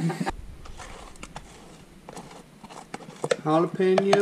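Scattered light clicks and taps of a metal spoon against a plastic blender jar as thick honey is scraped in, followed by a man talking near the end.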